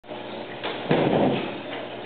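A short knock, then a louder, muffled thump about a second in that dies away over about half a second.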